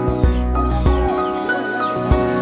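Background music: sustained tones over low thumping beats less than a second apart, with short falling chirps up high.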